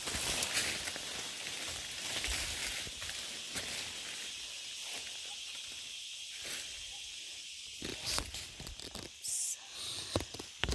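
Footsteps crunching through dry leaf litter and brushing past undergrowth on a forest path, loudest in the first few seconds, with a few sharper knocks of steps or snapping twigs later. A steady high hiss runs underneath.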